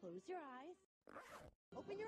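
Cartoon voices from a SpongeBob YouTube Poop edit, pitch-bent so they swoop up and down, broken about a second in by a short hissing burst of noise set between two abrupt cuts to silence.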